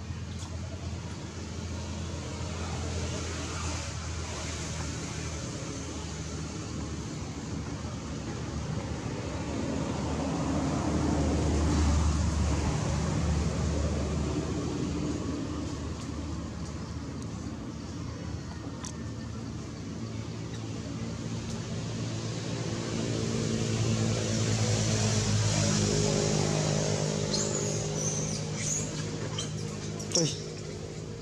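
Motor vehicle engines running, heard as a low steady drone that swells louder twice, around the middle and again near the end.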